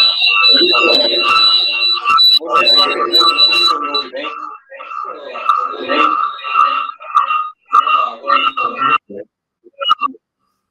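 A man's voice asking a question over a choppy remote audio link, garbled and unintelligible, with steady tones running through it. The voice rises and fades, breaks off a few times, and cuts out near the end.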